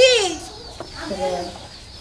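Domestic chicken clucking, with a short spoken "ki?" at the very start.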